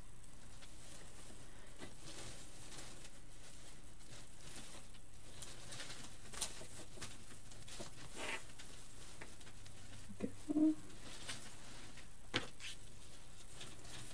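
Artificial pine stems and wired ribbon rustling and crinkling as they are handled and fastened, with a few soft clicks and a brief louder low-pitched sound about ten seconds in, over the steady low buzz of an electric glue pot.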